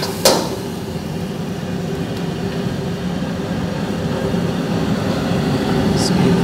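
Steady low roar of a commercial wok station, its gas burner and extraction running. A steel ladle scrapes the wok once just after the start.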